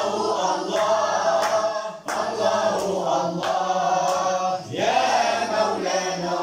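A group of boys singing Moroccan madih, devotional praise of the Prophet, together in unison with no instruments, in a chant-like melody. The singing dips briefly for a breath about two seconds in and again near the end.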